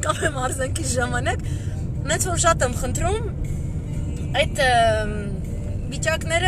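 A woman talking in Armenian, one syllable drawn out and falling in pitch about four and a half seconds in, over the steady low road rumble inside a moving car's cabin.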